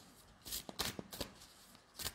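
A deck of cards being shuffled by hand, overhand, in packets: a quick, irregular run of faint, soft card slaps and rustles through the first half.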